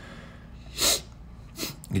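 A single short, sharp breath noise through the man's nose, about a second in, against quiet room tone.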